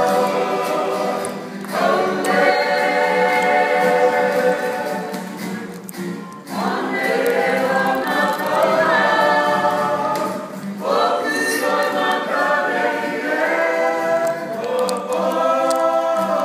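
Kapa haka group singing a Māori poi song together, men's and women's voices over acoustic guitar strumming. The singing comes in phrases of about four to five seconds with short breaths between them.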